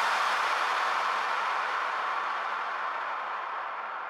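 The end of an electronic house track: the kick-drum beat stops and a hissing wash of noise fades out slowly, its highest frequencies dying away first.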